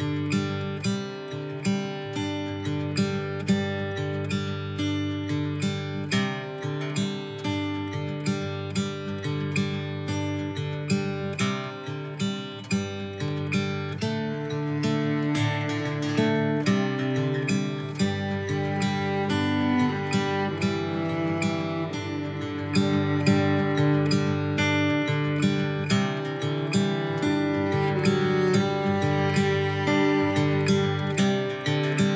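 Instrumental acoustic guitar music, picked and strummed at a steady pace.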